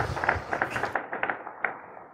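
Audience applauding, the clapping thinning out and fading away over about the first second and a half.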